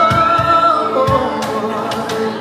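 Live pop band performance: several voices sing a melody together, holding a long note at the start, over a band accompaniment with a drum beat about a second apart.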